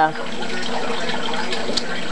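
Pellet stove's blower fan running, a steady rushing noise with a faint low hum, while the stove is switched on and trying to light.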